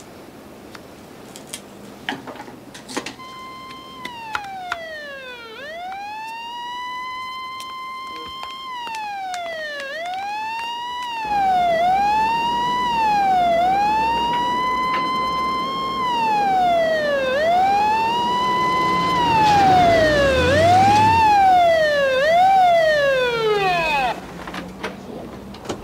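Police van siren wailing, its pitch sweeping up and down, alternating long slow wails with quicker yelps; it starts about three seconds in and grows louder as the van approaches, with the vehicle's engine rumbling underneath from about halfway.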